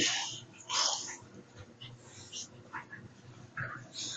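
Pug puppy's breathy, wheezy noises: two short rough bursts in the first second, then a few faint, brief sounds.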